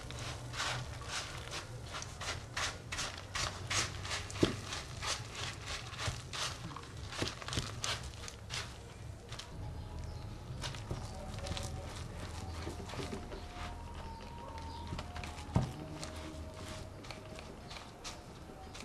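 Wooden spoon stirring a stiff, freshly scalded cornmeal dough in a plastic bowl: a run of quick knocks and scrapes against the bowl, close together in the first half and thinning out later.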